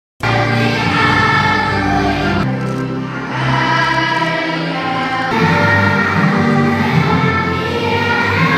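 A children's choir singing with instrumental backing, starting suddenly right at the start.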